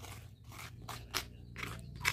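A plastic spatula scraping ground spice paste across a rough stone mortar, several short, faint scrapes as the paste is gathered into a pile.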